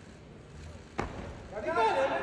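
A sharp knock about a second in as a weightlifter pulls a loaded barbell into the clean, then loud shouting voices.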